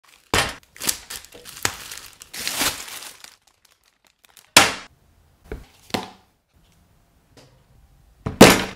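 Clear plastic wrapping crinkling and tearing as it is pulled off a large chocolate Easter egg, in quick rustling bursts for about three seconds. Then a sharp knock about halfway through, followed by two lighter knocks about a second later.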